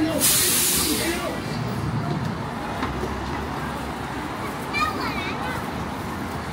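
A bus's air brakes releasing: a loud burst of air hiss lasting about a second near the start, over street noise of traffic and passers-by talking.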